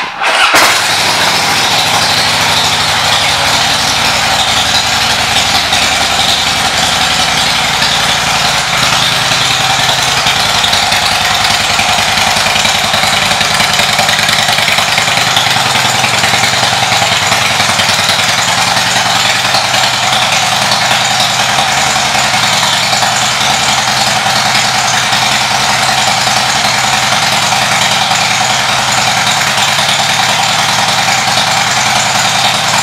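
2008 Harley-Davidson Fat Boy's Twin Cam 96 V-twin engine, fitted with aftermarket exhaust pipes, starting up with a brief surge and then idling steadily.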